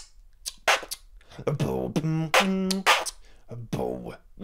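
Human beatboxing: a few sharp 't' hi-hat clicks, then a voiced 'bOW' sliding down in pitch. This is followed by hummed kick drums and BMG snares made with a hum at the same time, in the pattern 'bm-BMGm t BMG t'.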